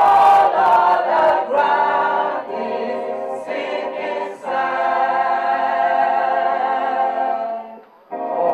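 A congregation of men and women singing a hymn together, with no instruments heard. The last phrase ends on a long held note that breaks off just before the end.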